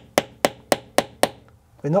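Light metal hammer tapping a steel rivet setting tool, five quick even taps at about three or four a second, pinching a cap rivet down through leather onto a small metal anvil. The taps stop about a second and a half in.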